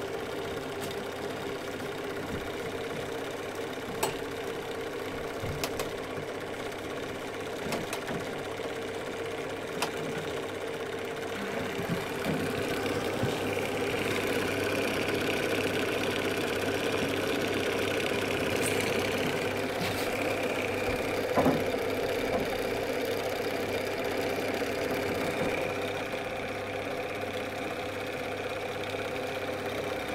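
Prinz Magnon Super 8 film projector running, its motor and film-transport mechanism making a steady mechanical clatter with a few sharp clicks. The clatter grows louder and brighter in the middle, as the film gate is filmed close up.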